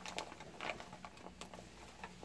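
A clear plastic bag crinkling and rustling faintly as it is handled and pulled open, with a few short crackles.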